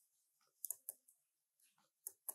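Near silence with a few faint, short clicks about half a second to a second in.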